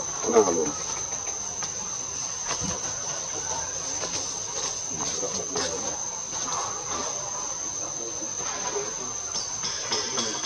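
A steady, high-pitched insect drone holding one even tone. Faint human voices sit under it, with a louder voice briefly at the start.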